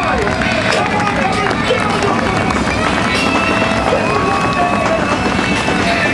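A pack of winged sprint cars' V8 engines running together as the field rolls in formation, their engine notes rising and falling with the throttle.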